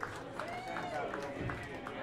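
Audience at the end of a song: scattered clapping, a drawn-out whoop and voices in the crowd, the clapping thinning out toward the end.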